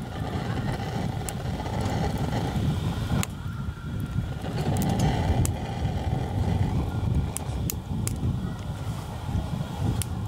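Several sharp clicks of a lighter being struck to light a gas lantern, the loudest about three seconds in and a quick run of them near the end. Under them is a steady low rumble of wind on the microphone.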